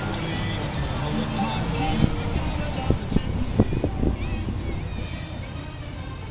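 A Christmas song playing over the low, steady rumble of a slowly moving car. A few dull thumps come in the middle, and one sharp knock comes near the end.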